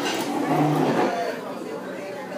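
Voices in a room: a man's short drawn-out low vocal sound about half a second in, over background crowd chatter.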